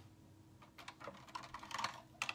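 Several light clicks and taps of small plastic items being picked up and handled, starting about a second in.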